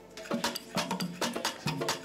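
Live praise band starting to play: quick percussion strikes, about six a second, begin about a third of a second in, with a few held instrument notes underneath.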